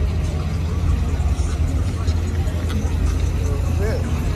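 Steady deep rumble from the cars at a night car meet, with people talking over it.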